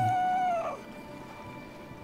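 Harp seal pup calling: one drawn-out cry held level in pitch, then sliding down and stopping under a second in. Quiet background music follows.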